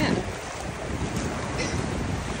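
Shallow surf washing over the sand at the water's edge, with wind buffeting the microphone.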